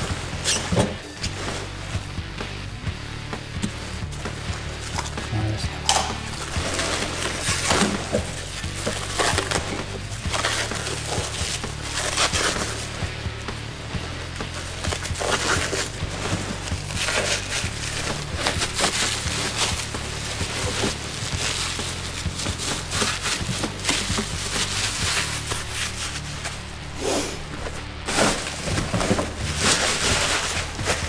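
Clear plastic wrapping crinkling and rustling in irregular bursts as a package is unwrapped from a box of packing peanuts, over background music.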